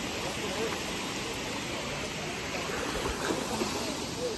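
Steady rush of flowing river water, with faint voices in the background.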